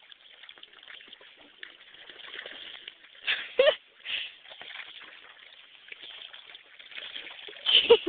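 Soft water sloshing and splashing from an Australian shepherd dog paddling as it swims. A person's voice, a short laugh, breaks in about three and a half seconds in and again just before the end.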